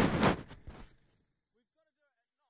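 A burst of loud rushing noise on the microphone, with a few knocks in it, that fades out within the first second as the camera is swung round. It is followed by near silence with a few faint, short chirps.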